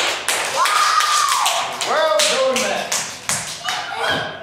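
Children's high voices calling out over a run of irregular sharp claps and taps from small hands.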